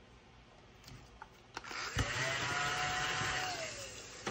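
A small motor spins up about two seconds in, runs steadily with a whir, and winds down near the end. A couple of faint ticks come before it.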